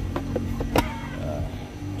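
Handling noise as a chronograph is lifted out of a hard plastic case: a few light clicks and knocks, the sharpest just under a second in, over a steady low hum.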